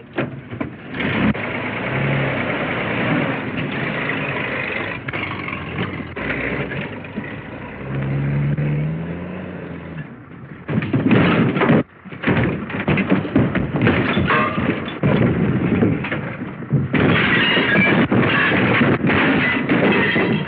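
A car engine running as it tows a trailer over rough ground, then, about ten seconds in, a long run of crashing and clattering as the trailer tips over. The sound is muffled, cut off in the highs like an old film soundtrack.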